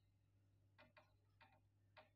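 Faint marker strokes on a whiteboard: four short ticks in the second half as words are written, over a low steady hum.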